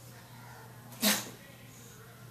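English bulldog giving one short, sharp huff of breath about a second in.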